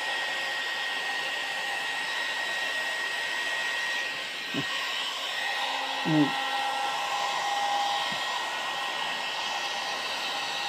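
Hot air styling brush running steadily: a steady fan hiss with a thin high whine, dipping briefly a little after halfway.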